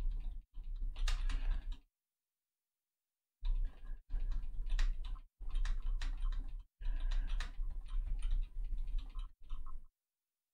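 Computer keyboard keys clicking in quick runs as an undo shortcut is pressed again and again to remove brush strokes, with a pause of about a second and a half about two seconds in.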